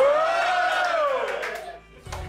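A person calling out a long, high 'ooh' that rises and then falls in pitch for about a second and a half before stopping.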